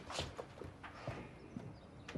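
A few faint, irregular taps and clicks, about half a dozen spread over two seconds, against low room tone.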